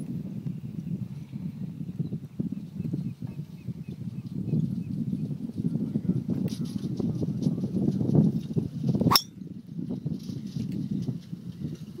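A golf driver striking a teed ball: a single sharp crack about nine seconds in, heard over a low, fluctuating rumble.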